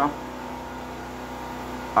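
Petrol generator running steadily in the background while it charges a battery bank: a constant hum with a few fixed tones.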